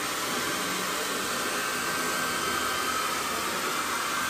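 Handheld heat gun blowing hot air steadily onto a silk screen, an even rushing noise with a faint high whine, as used to dry the paint on the screen.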